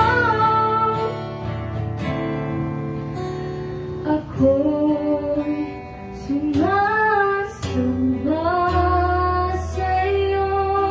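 A young woman sings a slow song into a handheld microphone, holding long notes and sliding between them, accompanied by an acoustic guitar.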